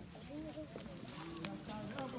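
Indistinct voices of people talking, with a few sharp clicks scattered through it.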